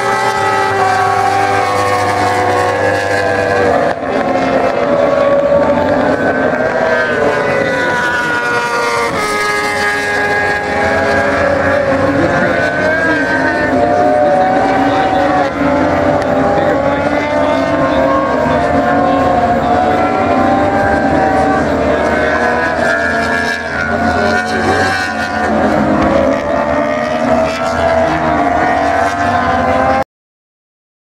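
Several racing motorcycle engines at high revs through a corner, their pitches rising and falling as the riders brake, shift and accelerate, loud and continuous.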